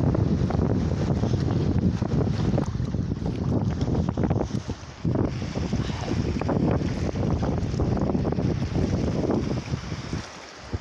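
Strong wind buffeting the microphone in gusts, easing briefly about halfway through, with water moving around a small rowing boat.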